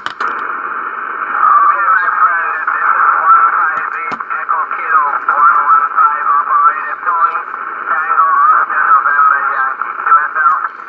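A distant station's voice coming through a Yaesu FT-840 HF transceiver, thin and narrow, over a steady hiss of static. It is the other station answering the request to repeat its call sign.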